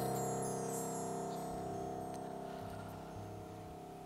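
The final chord of a worship song held on an electric keyboard, slowly fading away, with a high shimmering chime-like sparkle near the start.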